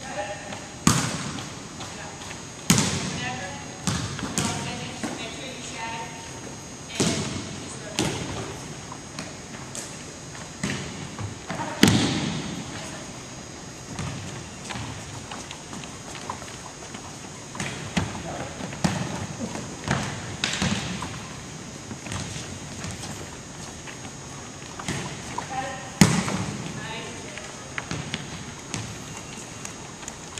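Volleyballs being played and bouncing on a hardwood gym floor: about a dozen sharp smacks at irregular intervals, each ringing on in the echoing hall.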